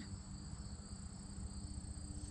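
Insects trilling steadily in two continuous high tones, over a low rumble.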